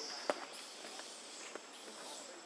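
Light scuffling with scattered clicks, one sharp click about a quarter second in, over a faint high hiss that fades in the first half second.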